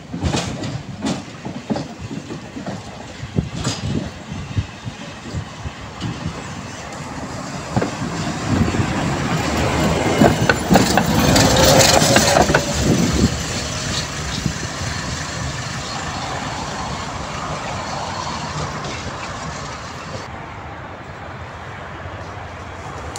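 A tram approaching and passing close by, its wheels clicking over the rail joints, loudest as it goes past about halfway through with a short whine, then fading as it moves away.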